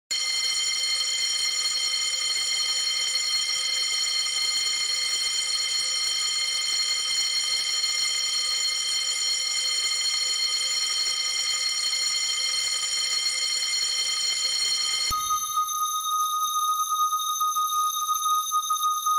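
A continuous, steady alarm-bell tone used as a sound in an electronic track. About fifteen seconds in it switches abruptly to a thinner, higher tone.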